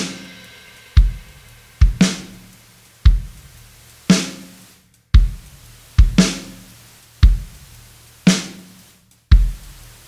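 Recorded drum kit playing a steady groove through Baby Audio's TAIP tape-saturation plugin with its noise control turned up. Kick drum hits come about once a second, a brighter snare hit about every two seconds, and each hit decays before the next.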